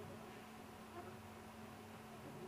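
Vector 3 3D printer at work: a faint buzzing of its stepper motors, with tones that warble and shift as the print head moves, over a steady hum.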